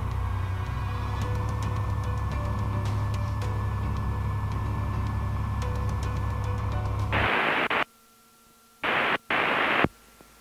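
Piper Saratoga's piston engine running at idle with the propeller turning, heard as a steady low drone. About seven seconds in the drone cuts off suddenly, followed by two bursts of radio static hiss with a near-silent gap between them, just before the automated weather broadcast comes on.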